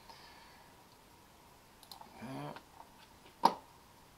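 Computer mouse clicking: a pair of faint clicks about two seconds in, then one sharp, much louder click near the end. A brief murmur of a man's voice falls between them.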